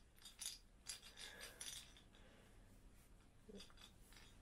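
A baby's handheld rattle, small beads inside a clear plastic ball, shaken in faint bursts of rattling during the first two seconds and briefly again near the end.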